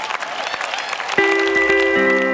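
A large audience applauding, then held chords of music come in suddenly a little over a second in.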